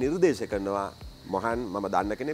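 A man speaking, in Sinhala: continuous talk with a brief pause about a second in.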